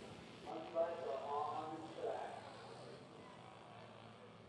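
Faint voices talking in the distance for about two seconds, then only low outdoor background noise.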